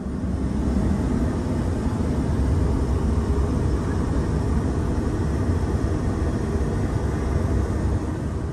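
Steady in-flight cabin noise of an Airbus A340-300 in cruise. It is an even, unbroken rush of airflow and engines, heaviest in the low bass.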